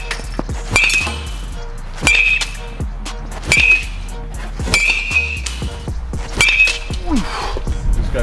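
Metal baseball bat hitting tossed balls in batting practice. About five sharp pings come roughly every second and a half, each with a short metallic ring, over background music.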